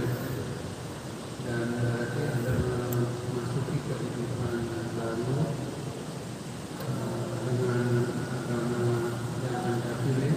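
A man's voice speaking, indistinct, in two stretches with a pause near the middle, over a low steady hum.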